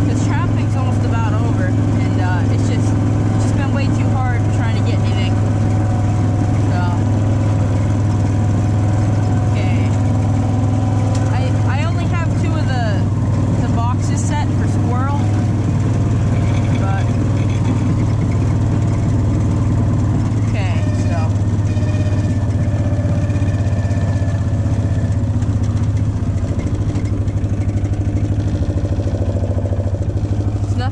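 Side-by-side utility vehicle's engine running steadily under way, with squeaks and rattles from the chassis.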